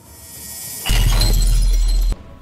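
A man coughing hard into his fist close to the microphone: a breathy build-up, then about a second of loud, harsh cough noise that overloads the microphone and distorts.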